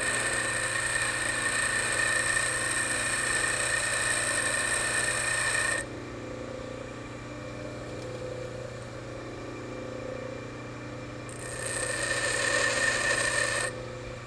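Baldor bench grinder running while a high-speed steel lathe tool bit is ground lightly against its wheel: a steady grinding hiss over the motor's hum. About six seconds in, the bit comes off the wheel and only the motor and spinning wheel are heard. A second, lighter pass follows near the end.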